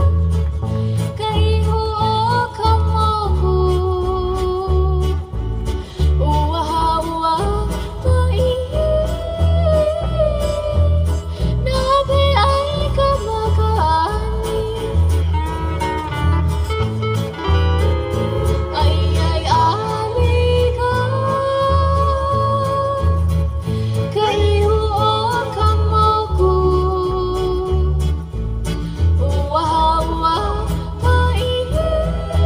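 Hawaiian falsetto singing, a woman's voice flipping between registers in yodel-like breaks and holding high notes, over strummed ukuleles and acoustic guitars with steel guitar and a steady low bass beat.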